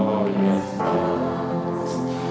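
A congregation singing a hymn together in slow, held notes, with a brief break and a new note about half a second in.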